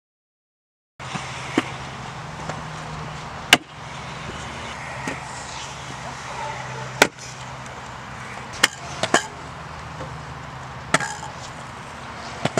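Kick scooters knocking and clacking on concrete ramps: sharp, separate knocks a few seconds apart, three of them close together near the middle, over a steady background hum of distant traffic. The sound starts abruptly about a second in.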